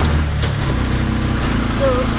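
Auto-rickshaw (tuk-tuk) engine running steadily while riding, heard from inside the open cabin; its low drone shifts about half a second in.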